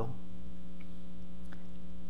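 Steady electrical mains hum, a low buzz of several fixed tones, with a faint tick about one and a half seconds in.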